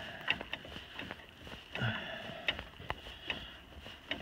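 Steel turnbuckle on a tractor's three-point-hitch chain being turned by hand to tighten it: a handful of irregular light metal clicks and clinks as the turnbuckle and chain links shift.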